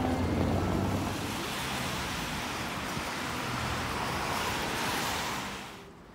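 Road traffic noise: a vehicle's tyre hiss swelling as it approaches, then cut off suddenly near the end.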